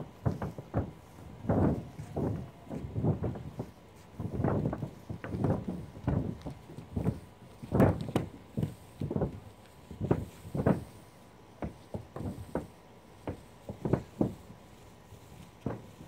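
Footsteps across a mobile home roof: a run of irregular thumps, one or two a second, as a man in flip-flops walks over it while rolling on roof coating.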